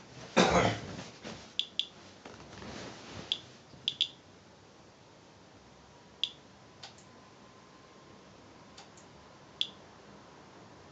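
Inspector Alert Geiger counter chirping once for each detected count, about ten short chirps at irregular intervals, some in quick pairs, as it counts background radiation. A louder rough noise comes in the first second.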